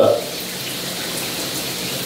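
A shower running steadily, a constant rush of water.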